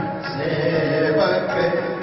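Sikh kirtan music: harmonium with a sung, chant-like melody, accompanied by tabla and a bowed string instrument, playing continuously.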